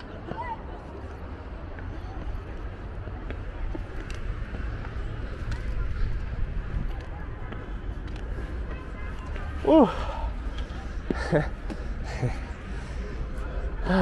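Outdoor ambience: a low steady rumble with faint distant voices. About ten seconds in, a short laugh and a spoken word cut through.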